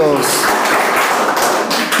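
A congregation applauding: steady, dense clapping right after the preacher's voice stops.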